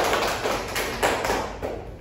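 A small group of students applauding with hand claps, dying away near the end.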